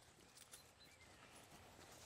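Near silence: faint outdoor background with a few faint, soft ticks.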